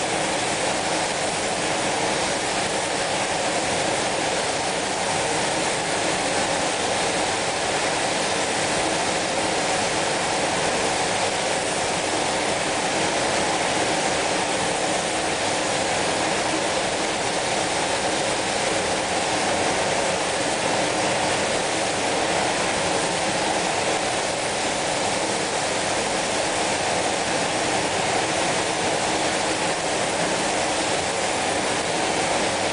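Steady, unbroken hiss of compressed-air spray guns applying spray-on chrome.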